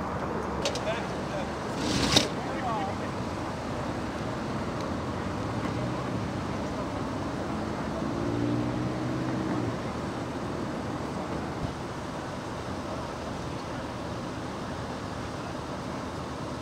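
Steady roadside traffic noise, with a sharp thump about two seconds in and a low engine hum for a couple of seconds around the middle.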